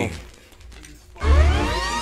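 A short lull, then about a second in a grime instrumental drops in with heavy sub-bass and rising synth sweeps.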